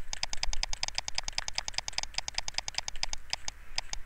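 Stylus pen tip of a graphics tablet clicking rapidly against the tablet surface during quick short brush strokes, about ten small clicks a second.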